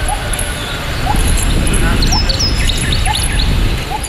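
Birds chirping repeatedly in short rising calls over a loud, steady low rumbling noise from the field recording.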